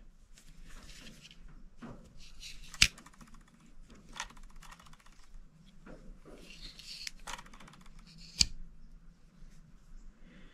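Two-blade Case folding hunter slip-joint pocketknife being worked by hand. A blade snaps shut against its backspring with a sharp click about three seconds in, then the second blade snaps open with another click near the end. Light handling and rubbing noise comes between the clicks.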